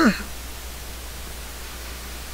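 Steady background hiss with a low hum from the recording. The last trailing sound of a spoken word falls at the very start.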